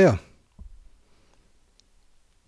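The falling end of a man's spoken word, then one faint, soft click about half a second in, followed by near silence with a tiny tick near the end.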